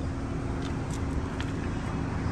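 Steady low rumble of a car heard from inside its cabin, with a faint steady hum above it and a few faint ticks.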